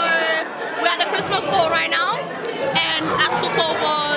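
Speech: a woman talking over the chatter of other people.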